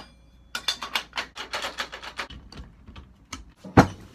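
A small homemade scooter being shaken hard by its bar, its loose parts rattling in a quick run of sharp metal clicks, several a second, then one loud knock near the end. The rattle shows that the scooter is not dialed: parts are still loose.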